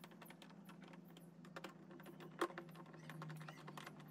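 Faint small clicks and taps of a hand tool working at the rim of a plastic washing-machine tub, with a couple of sharper clicks about halfway through. A steady low hum runs underneath.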